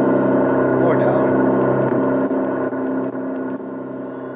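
Electronic engine sound from an ESS-One RC engine sound unit, played through a speaker: a steady simulated engine idle. Its volume steps down several times in the second half as the unit's button is pressed.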